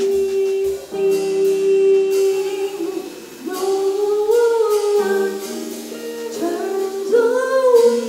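Live jazz trio: a woman sings long held notes that slide between pitches, over hollow-body electric guitar chords and soft drum-kit playing.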